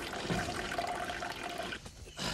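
A thin stream of liquid pouring and splashing into a jug that is already partly full, running steadily.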